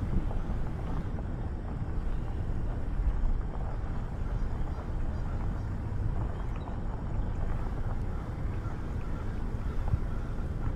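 Vehicle driving slowly on a gravel and dirt lane: a steady, low rumble of engine and tyres, with wind buffeting the microphone.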